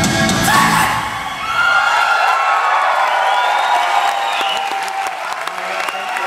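Rock band playing the final chord of a live song, which stops about a second and a half in. A concert crowd cheering and whooping follows.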